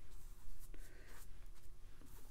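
Paintbrush strokes on watercolor paper: a few faint scratchy strokes as the brush is worked into a wet wash, with a small tick about three-quarters of a second in.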